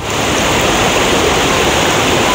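Steady rush of flowing water from a forest stream, loud and even, coming in suddenly at the start.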